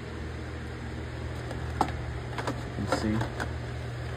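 A steady low mechanical hum with a few short, sharp clicks in the second half.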